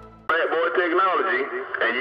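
A man's voice received over a CB radio on channel 28, thin and cut off at the top like AM radio audio, from a long-distance skip (DX) station. It cuts in suddenly about a quarter second in, just after the last of the intro music fades away.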